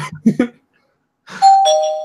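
A two-note ding-dong chime: a higher note, then a lower one, both ringing on briefly, like a doorbell.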